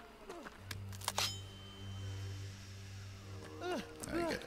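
Soundtrack of an animated horror fight: a few sharp hits about a second in, then a steady low drone, with short vocal sounds just after the start and near the end.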